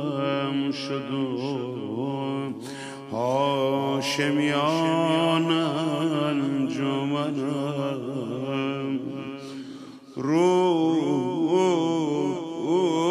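A man's solo voice chanting a Persian mourning elegy (rowzeh) into a microphone, in long, drawn-out notes with wavering, ornamented pitch. The line breaks briefly about three seconds in and again near ten seconds before resuming.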